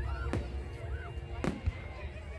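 Fireworks display: two sharp bangs of shells bursting, a little over a second apart, over a low rumble.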